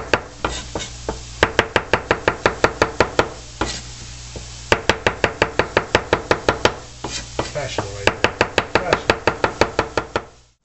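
Chef's knife slicing whole mushrooms on a bamboo cutting board: quick taps of the blade on the wood, several a second, in runs of a second or two with short pauses between.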